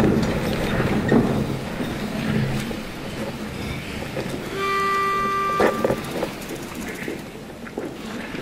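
A single steady reedy note from a pitch pipe, about a second and a half long and beginning about halfway through, sounding the starting pitch for an a cappella choir. Low room noise from the hall runs under it.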